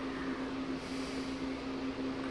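A steady, even hum with a faint hiss underneath, unchanging throughout: background machine noise in the room.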